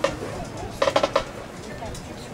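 Sharp percussion taps from a marching band's percussion section warming up: one at the start, then a quick run of four about a second in, each with a short ringing clink, over background chatter.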